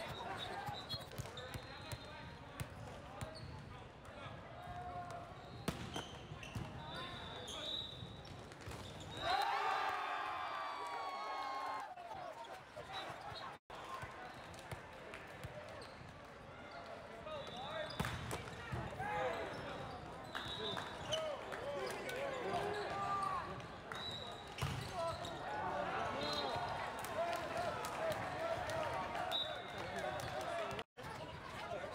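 Indoor volleyball play: volleyballs being struck and bouncing in scattered sharp knocks, with short high sneaker squeaks on the court floor and players' shouts and chatter throughout.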